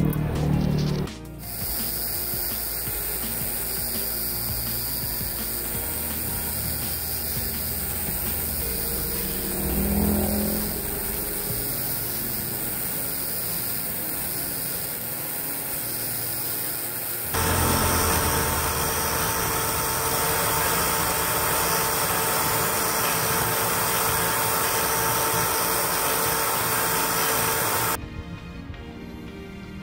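Power tool spinning a carbide burr that grinds out the inside of a resin ring held in a vise: a steady grinding whir. A bit past halfway it turns louder, with a steady whine added.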